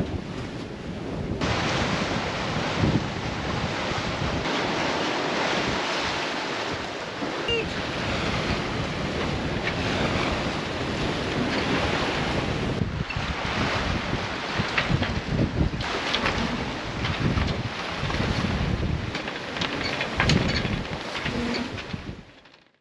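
Wind buffeting the microphone and waves rushing along the hull of a sailing catamaran under way in a choppy sea. The noise changes abruptly several times, as the shots change.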